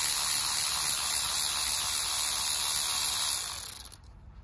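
Cordless electric ratchet running continuously as it spins out a 10 mm ignition-coil bolt, a steady high-pitched whir that stops just before the end.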